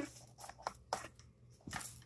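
A few faint, short clicks and a brief rustle near the end: hands handling a small tube of sprinkles and sticky foam slime in a plastic tray.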